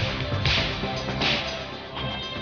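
Television programme title theme music with two swishing whoosh effects over it, about half a second and a second and a quarter in.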